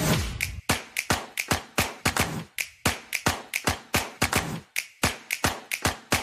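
Programme intro music opening with a run of sharp percussive hits in a quick, slightly uneven rhythm, about four a second, each with a short bright ring.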